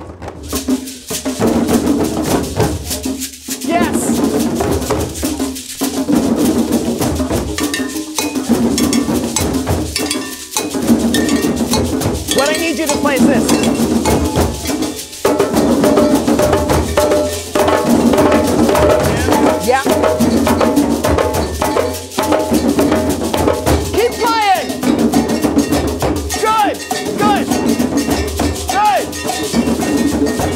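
A group of djembe hand drums played together in a steady, driving rhythm, with a beaded gourd shaker (shekere) rattling along.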